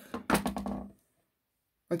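A woman speaking for about the first second, with a low bump from the recording phone being handled under her voice. The sound then cuts to dead silence where the recording was paused, and her speech resumes right at the end.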